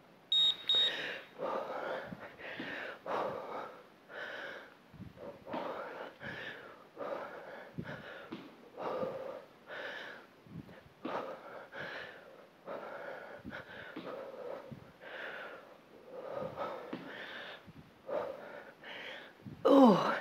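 A woman breathing hard during squat jumps, with a forceful exhale about once a second in time with the reps. A short, high electronic timer beep sounds just after the start, marking the start of the interval.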